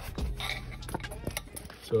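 Scattered light clicks and handling noises from a metal worm-drive hose clamp and the charge pipe being worked by hand.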